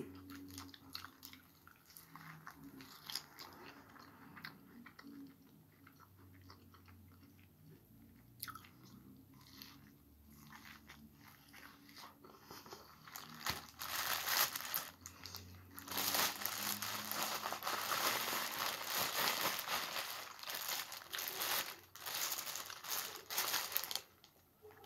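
Close-up chewing and biting into boiled corn on the cob, with small wet clicks. In the second half, louder, dense crunching and crackling as snow crab legs are broken apart over a plastic bag.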